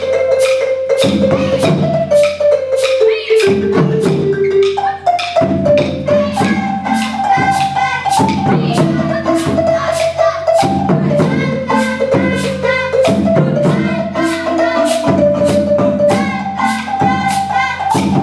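Live percussion ensemble music: marimbas play a stepping melody with held lower notes over a steady, even clicking beat.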